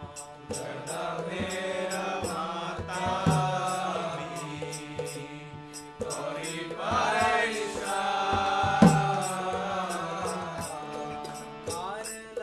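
A man singing a Vaishnava devotional song in a chanting style, his voice rising and falling in long sung phrases over a steady instrumental drone, with light high clicks keeping an even beat.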